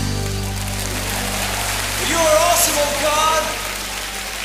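The worship band's final chord rings out and fades over congregation applause. About halfway through, voices rise from the crowd with wavering pitches.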